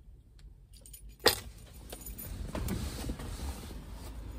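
Keys jingling faintly, then one sharp loud click about a second in, followed by rustling and louder outside noise as a car door opens and someone climbs out of the car.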